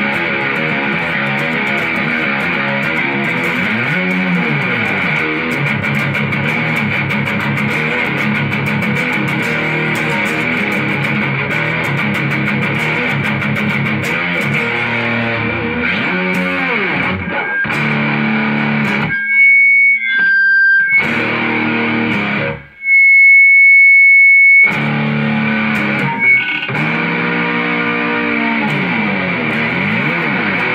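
Distorted electric guitar played through a Mesa/Boogie combo amp: a custom RD-style guitar running through riffs with string bends. Twice, about nineteen and twenty-three seconds in, a lone high note rings out and is held, louder than the rest.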